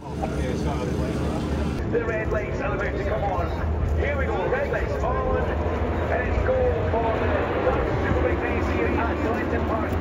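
A field of British Superbike race motorcycles revving together at the start of a race: a dense, wavering engine noise over a steady low rumble.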